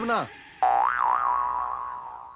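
A comic 'boing' sound effect: a twangy tone that starts suddenly about half a second in, wobbles in pitch, then holds and slowly fades.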